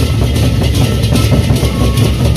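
A gendang beleq ensemble playing loudly: large Sasak double-headed barrel drums beaten in a dense, fast pattern, with clashing cymbals on top.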